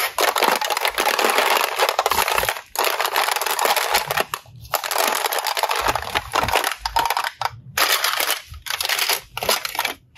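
Hollow clear plastic toy containers clattering and rustling against one another as hands rummage through a basket full of them, a dense run of small clicks broken by a few short pauses.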